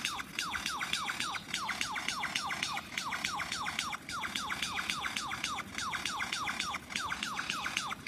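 Superb lyrebird in full tail-fanned display, singing a fast, unbroken run of descending whistled notes, about six a second, with a clicking edge.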